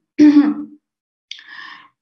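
A woman's voice: one short, loud voiced sound, then a brief breathy sound a little over a second in, as she pauses between sentences.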